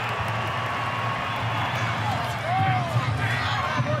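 Stadium crowd cheering and clapping as a try is awarded to the home side.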